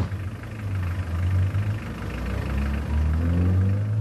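A car engine idling with a low, steady rumble. A faint rising tone joins in near the end.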